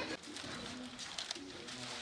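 A dove cooing softly in a few short, low notes.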